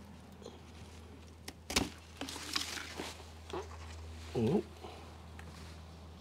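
Hands working a plant's root ball in a bucket of water to soak off its sphagnum moss: scattered light clicks, a sharp knock a little under two seconds in, then a short rustle, over a low steady hum. A brief voice-like sound comes about four and a half seconds in.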